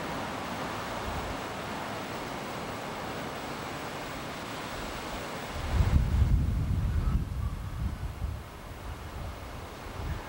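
Wind buffeting an outdoor camcorder microphone: a steady hiss, with heavy low rumbling gusts from about six to eight seconds in.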